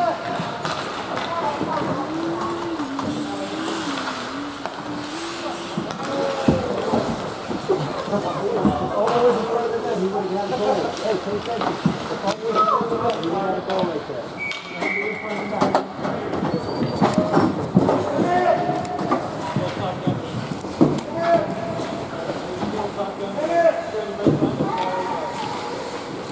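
Indistinct voices of spectators and players calling out, echoing in an indoor ice rink, with scattered clacks of sticks and puck on the ice. A brief whistle sounds about fifteen seconds in.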